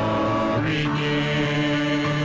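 A mixed vocal quartet, two men and two women, singing a Christmas song into microphones, holding long notes in harmony and moving to a new chord about half a second in.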